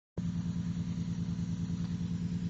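2002 Chrysler Concorde's V6 engine idling with a regular, slightly uneven pulse. The idle is a bit high and rough, which the owner puts down to a major vacuum leak.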